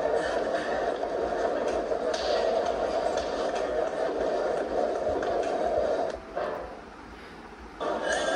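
Muffled playback of a video's soundtrack: a dense, steady mix with voices in it and little treble. It drops quieter about six seconds in, then comes back louder at the very end.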